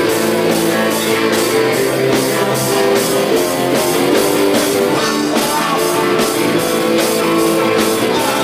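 Live rock band playing an instrumental passage: electric guitars and bass guitar over drums keeping a steady beat.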